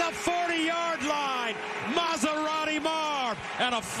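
A man's voice speaking throughout: broadcast play-by-play commentary on a football play.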